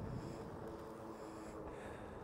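Faint riding noise from a dual-motor e-bike in motion: a low, even rush with a few faint steady hum tones.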